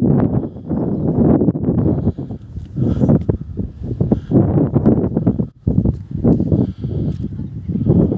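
Gusty wind buffeting the phone's microphone: a loud, uneven low rumble that surges and falls, dropping out briefly about five and a half seconds in.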